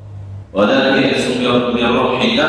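A low hum, then about half a second in a man's voice starts a loud, drawn-out, chant-like recitation with long held notes.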